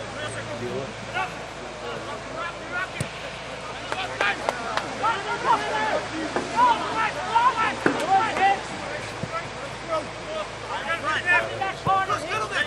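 Many short, overlapping men's shouts and calls from rugby players and touchline spectators, indistinct and at a distance, over a steady outdoor background hiss on the camera microphone.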